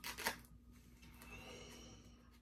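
A short rustle of a Phoozy insulated phone pouch being handled, right at the start.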